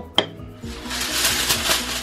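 Aluminium foil crinkling and crackling as a sheet is handled and pressed over the top of a pan, starting about half a second in after a short knock.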